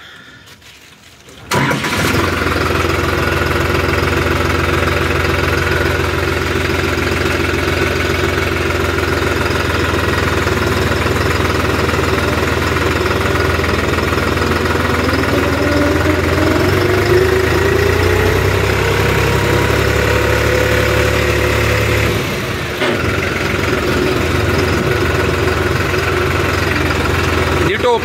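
New Holland 3630 tractor's three-cylinder diesel engine starting up about a second and a half in, then running steadily as the tractor drives off. Its note rises as it picks up speed, with a brief dip in level later on.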